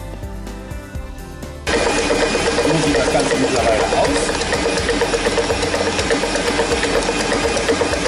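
Guitar music, cut off suddenly about two seconds in by a stand mixer's motor kneading bread dough with a dough hook: a loud, steady machine hum with a constant tone.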